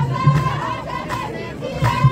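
Ahwash group chant: many voices singing together on a held high note, over beats of hand-struck frame drums, with a sharp drum strike near the end.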